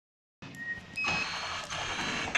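Short electronic beeps from a nail polish labelling machine's touchscreen control panel as its Auto button is pressed, then the machine running, a steady mechanical noise with high whining tones, from about a second in.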